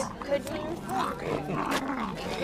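Cocker spaniel puppies growling as they play-wrestle, in short pitched bursts.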